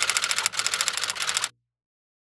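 Typewriter sound effect: a rapid, even run of key clacks, about a dozen a second, that cuts off suddenly about one and a half seconds in.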